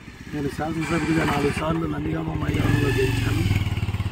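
A vehicle engine starts running a little past halfway in, a steady low hum that carries on under a man's speech.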